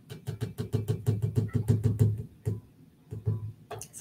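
Stand mixer starting up with its paddle beating stiff shortbread dough as flour is poured in. It makes a fast run of knocks over a pulsing low rumble for about two seconds, then goes on more sparsely.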